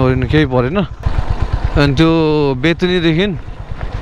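Motorcycle engine running at a steady, low pace on a dirt road, with a man's voice talking loudly over it for most of the time.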